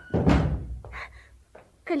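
A door shutting with one dull, heavy thump just after the start, dying away within half a second.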